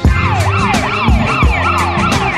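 Background music with a steady kick-drum beat, overlaid by a fast wailing siren sound whose pitch sweeps up and down about three times a second.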